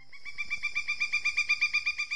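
A bird's rapid trill: a quick, even run of short chirps, about seven a second, growing louder as it goes.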